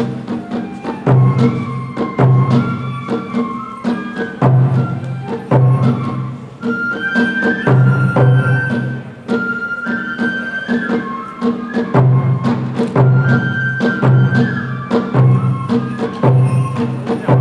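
Kagura accompaniment: a bamboo flute playing a melody in long held notes over repeated heavy drum strokes, with sharp clicks between them.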